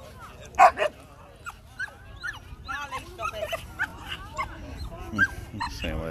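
A dog barks twice in quick succession about half a second in, then keeps up a string of short, high yips and whines.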